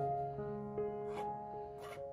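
Soft background music: a slow melody of held notes that changes pitch every half second or so.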